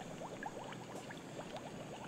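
Liquid bubbling in a glass laboratory flask on a heater, a quiet, steady patter of small bubbles popping.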